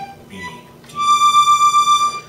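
Hohner diatonic button accordion in G, played on the push with the bellows closing: single right-hand notes of the G major chord, a brief B followed by a high D held for about a second. The held note wavers quickly in loudness.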